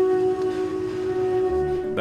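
Lion Electric school bus's pedestrian warning sound: the last of its three tones, one steady held note with overtones. The tones were added because the electric bus runs so quietly that people nearby would not otherwise hear it approach.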